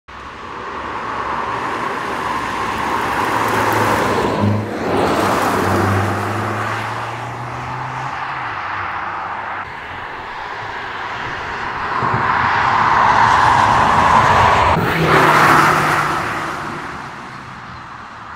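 Audi A5 Sedan e-hybrid driving past twice on a country road, its tyre and road noise swelling to a peak about four seconds in and again near the end, then fading, with a low hum that drops in pitch as the car passes.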